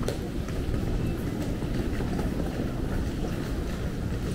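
Airport concourse ambience: a steady low rumble with faint scattered clicks and taps.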